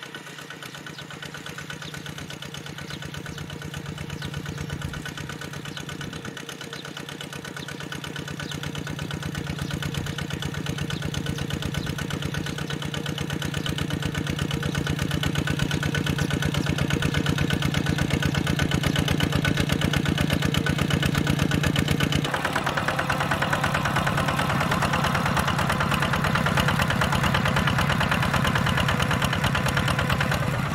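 Single-cylinder diesel engine of a two-wheel walking tractor running steadily while pulling a disc plow through soil. It grows louder over the first half, and about two-thirds through the sound changes abruptly to a louder, brighter clatter.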